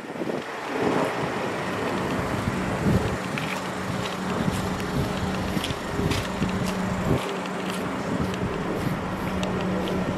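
Wind buffeting the microphone in uneven gusts, over a steady low hum.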